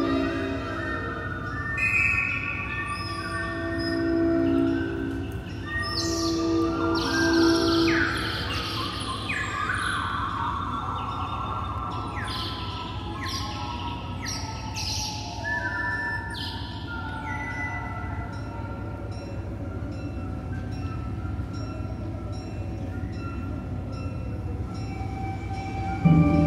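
Live contemporary ensemble music. It opens with held, overlapping tones, then from about 6 s to 17 s comes a string of high notes that start sharply and slide downward. It settles into a quiet sustained texture near the end.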